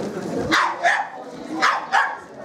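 A dog barking four times, in two quick pairs: one pair about half a second in and another near the end.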